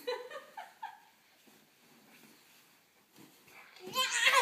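A toddler's voice: a few short, pitched vocal sounds in the first second, then quiet, then a loud vocal burst right at the end.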